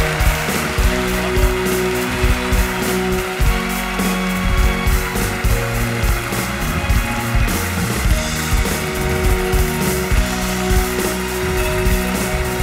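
Band music with a steady beat, played as walk-up music for an award winner, with audience applause beneath it.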